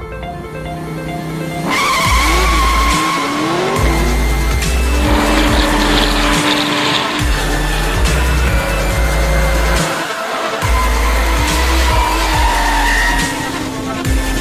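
Electronic music with a heavy bass beat, mixed with the engines and squealing tyres of drifting cars.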